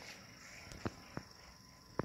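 Two faint, light clicks about a second in from handling a metal model kit's thin etched metal sheets and card packaging on a table.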